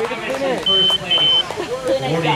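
Two short, high electronic beeps, each about a third of a second long, from the finish-line timing equipment as a runner crosses the line. People are talking in the background.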